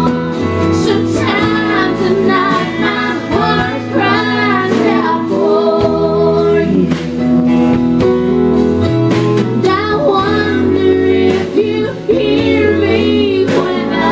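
Live country song: a woman singing lead while strumming an acoustic guitar, backed by a band.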